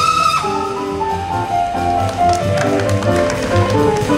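Live jazz big band: the brass section's held high note ends about half a second in, and the rhythm section carries on with a bass line, chords and cymbal strikes.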